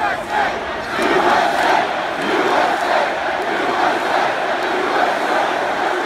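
Large arena crowd cheering and shouting, swelling about a second in and staying loud.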